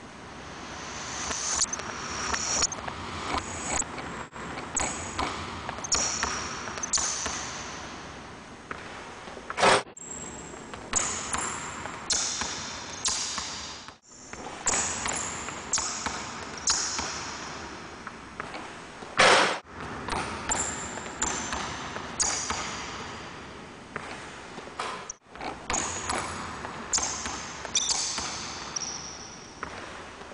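A basketball dribbled hard on a hardwood gym floor, with sneakers squeaking as the player cuts and jumps. A couple of louder bangs stand out, about ten and nineteen seconds in.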